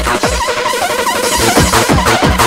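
Makina (fast Spanish hard-dance electronic music) played in a DJ set: a fast, pounding kick drum drops out for about a second in the middle, with a rapid rolling figure in the gap, then comes back in.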